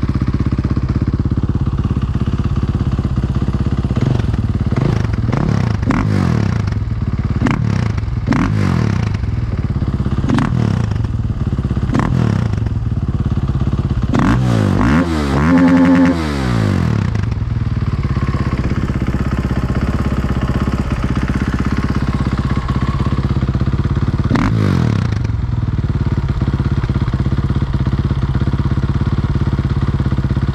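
KTM 450 EXC Six Days single-cylinder four-stroke engine, fuel-injected, running through an Akrapovic silencer. It idles steadily with a series of quick throttle blips in the first half, one longer rev that rises and falls about fifteen seconds in, and a last short blip near the end.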